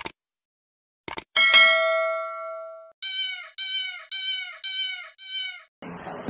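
Subscribe-button animation sound effects: a mouse click, then a quick double click about a second in, then a bell ding that rings out for about a second and a half. Five short, evenly spaced cat meows follow, each the same as the last.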